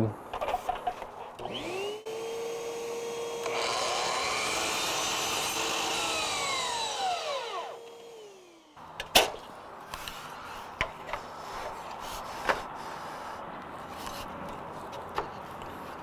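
Miter saw motor spins up, runs steadily while the blade cuts through panel moulding, then winds down with a falling pitch. A sharp knock follows, then light clicks and rubbing as the moulding is handled on the saw.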